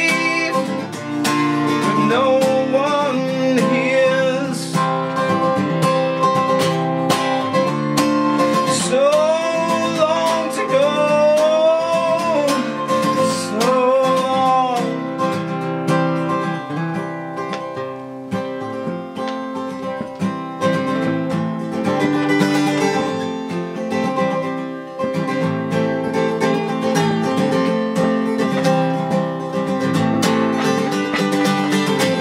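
Steel-string acoustic guitar strummed in steady chords, with a man singing long, gliding notes over it through the first half; after that the guitar carries on mostly alone.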